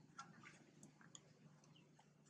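Near silence: faint outdoor background with a few soft ticks in the first second and one short, faint chirp later.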